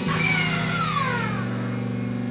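Amplified band in a room letting a low chord ring out steadily, with a high note gliding downward over it during the first second or so.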